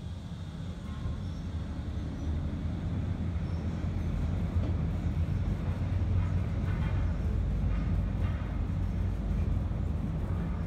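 Otis traction elevator car travelling upward: a steady low rumble that builds gradually as the car gathers speed.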